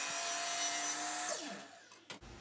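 DeWalt miter saw cutting a 45-degree miter through wooden chair rail molding: a steady high motor whine with the blade in the wood. About a second and a half in, the trigger is released and the blade spins down, its pitch falling as it fades.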